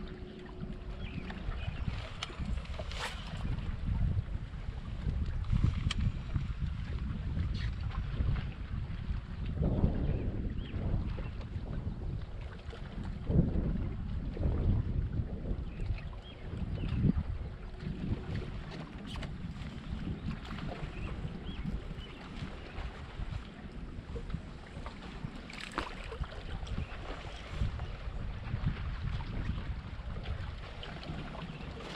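Wind buffeting a boat-mounted action camera's microphone, a low rumble that rises and falls in gusts, with a few sharp light clicks.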